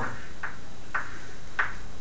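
Chalk striking a blackboard in three short strokes, roughly half a second apart, over a steady room hiss.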